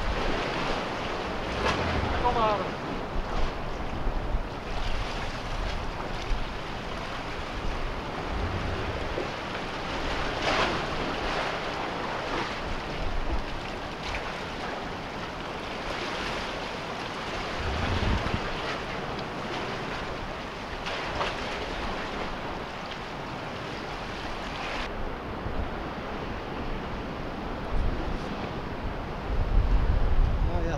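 Sea waves washing against a concrete tetrapod breakwater in a steady rush, with gusts of wind buffeting the microphone now and then.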